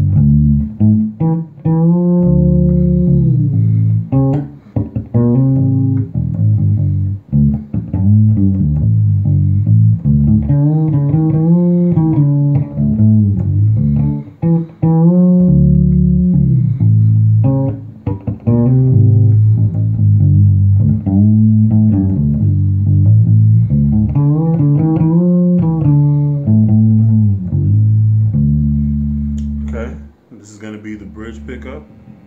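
SX Ursa 3 fretless electric bass, played on its neck (P) pickup with the tone control fully open. It plays a sustained line whose notes slide and glide in pitch, and stops about a second before the end.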